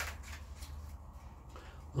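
Paper pages of a loose-leaf manuscript rustling as they are turned by hand: a few short, dry crackles, the loudest at the start. A low, steady hum runs underneath.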